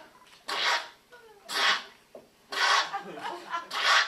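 A choir's voices making four short, breathy hissing bursts, about one a second, with faint sliding vocal sounds in between: free vocal improvisation.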